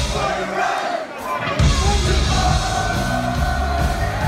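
Live party cover band playing loud, with a packed crowd singing and shouting along. The bass and drums drop out for the first second and a half, leaving the voices, then kick back in under a long held sung note.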